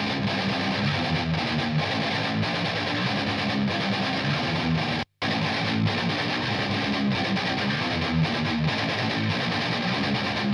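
Soloed playback of an electric guitar part recorded through a Harley Benton Vintage 2x12 cabinet with a Shure SM58. The same passage plays twice, split by a brief dropout about five seconds in: first recorded with the bare mic, then with a mic screen in front of it.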